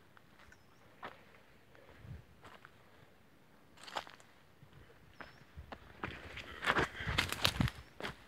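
Footsteps crunching on dry leaves and twigs, with brush rustling. Single steps are spaced out at first, then come heavier and quicker over the last two seconds.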